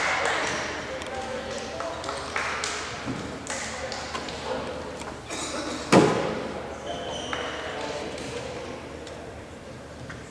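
Basketball arena ambience during a timeout: indistinct voices echoing around a large hall, with scattered short knocks and squeaks. One loud thud about six seconds in rings on in the hall.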